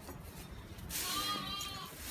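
A sheep bleating once, a held call of about a second that starts about a second in.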